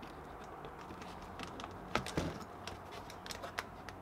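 Faint light clicks and taps of a plastic bulkhead fitting being handled and fitted through a clear plastic container lid: a few sharp ticks about two seconds in and a few smaller ones a little later.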